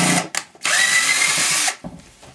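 Cordless drill-driver unscrewing a screw from a plastic battery-charger housing: a short burst, then the motor runs steadily for about a second with a slight whine before stopping.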